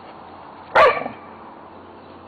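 A dog barks once, a single short bark that drops in pitch.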